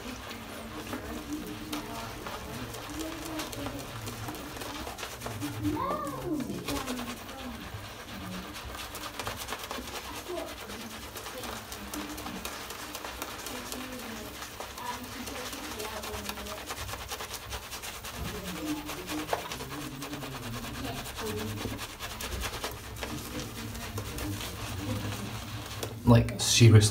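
Badger-style shaving brush face-lathering shaving soap on stubble: a steady scratchy, squishy swishing of the bristles through dense lather. Faint low wavering tones run underneath, with a brief rising one about six seconds in.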